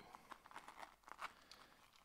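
Near silence with faint rustling and a few small clicks: a key being fitted into a tiny backpack by hand.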